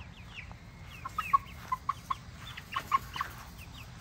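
Chickens clucking: a series of short, separate clucks over a couple of seconds, with faint high chirps.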